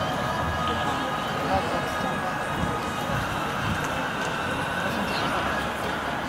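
Steady outdoor stadium background noise with an indistinct, distant public-address commentary voice echoing over it.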